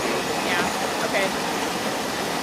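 Steady rushing noise of a fish pump at work, its machinery and the water running through the hose and dewatering tower while brown trout fingerlings are pumped onto a tanker truck.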